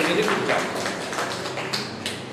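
Quick, irregular tapping, about six sharp taps a second, growing fainter toward the end.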